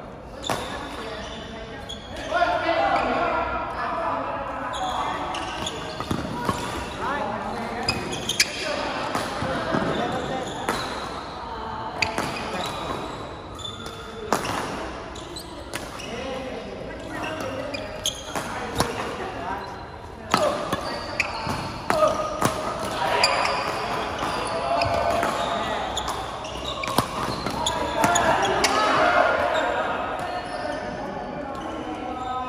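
Badminton doubles rally in a large hall with an echo: sharp, irregular racket strikes on the shuttlecock and player footwork on the wooden court, over the indistinct chatter of many players on the other courts.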